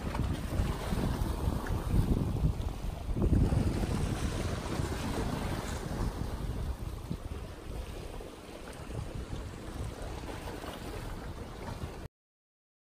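Wind buffeting the microphone in uneven gusts, strongest a few seconds in, over small ocean waves washing against the shore.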